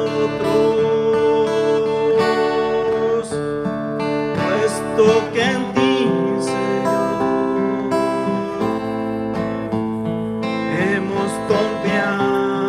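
A man singing a slow devotional song, accompanying himself on a strummed acoustic guitar, with held notes that waver in vibrato.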